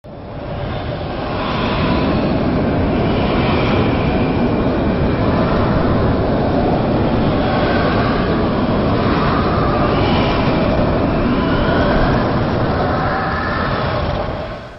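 Tornado wind sound effect: a dense, steady rushing roar with a faint shifting whistle in it, building over the first couple of seconds and then holding level.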